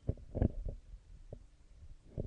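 Handling noise from a handheld microphone being moved about: a few dull low thumps and rubs, the loudest about half a second in.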